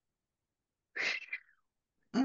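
A single short, breathy burst from a person, such as a sharp breath or sneeze-like huff, about halfway through and lasting about half a second; the rest is near silence.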